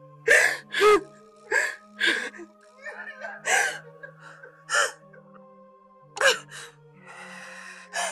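A man crying out in short, gasping bursts, about seven of them spread through the stretch, with a longer breathy sound just before the end, over sustained background music.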